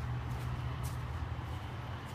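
Turbocharged straight-six of a 2013 BMW 535i idling: a steady low hum.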